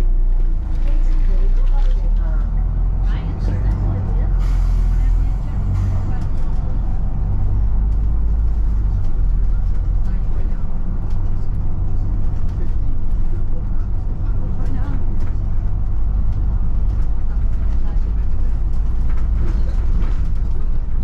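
Volvo B9TL double-decker bus with a nine-litre six-cylinder diesel and ZF Ecolife gearbox, driving along, heard from inside on the upper deck as a steady deep drone. There is a brief hiss of air about four seconds in.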